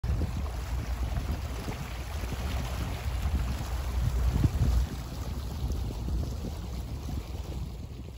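Wind buffeting the microphone over a steady wash of water noise, with a heavy, gusty low rumble, as the camera moves across open harbour water from a boat.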